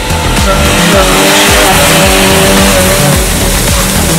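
An SUV engine revving under load as it drives through water and mud, with spray hissing from about a second in, over background music with a steady beat.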